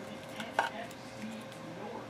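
A few light clicks and taps from a trading card being handled in the fingers, the sharpest about half a second in.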